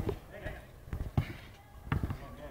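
Frontenis ball impacts: the rubber ball is struck by a racket and hits the wall and the concrete court, a few sharp smacks about a second in and again near the end.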